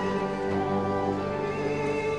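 A live orchestra playing classical music, bowed strings holding sustained chords.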